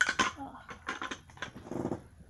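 Plush toys and fabric rubbing and knocking against the microphone in a run of quick rustles and clicks, then a short rough, purr-like buzzing sound near the end.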